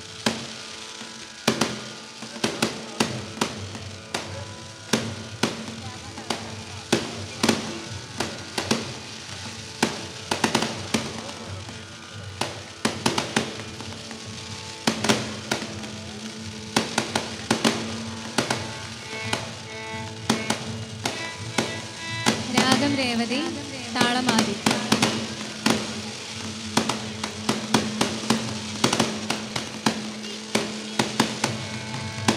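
Fireworks going off in a fast, uneven string of sharp bangs and crackles, several a second, over background music with a steady held drone.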